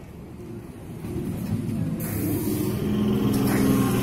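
Electric suburban (EMU) local train passing close alongside on the adjacent track, heard from inside another train: its rumble builds from about a second in and grows loudest near the end, with a rushing hiss and a steady low hum.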